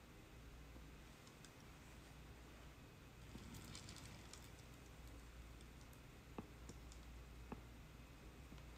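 Near silence: faint scattered clicks and light scraping from a carved clay pot being handled and worked with a trimming tool, with a cluster of small clicks in the middle and two sharper ticks near the end.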